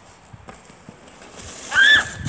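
A child's brief, loud, high-pitched squeal near the end, rising then falling.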